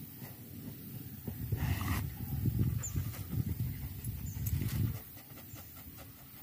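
Thai Ridgeback dog sniffing hard in quick, choppy breaths with its nose pushed into a tree stump, scenting for a snake; the sniffing is loudest in the middle and eases off near the end.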